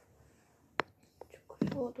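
Fingers handling and tapping the phone that is streaming: one sharp click a little before a second in, then a few fainter taps, with a brief soft-spoken word near the end.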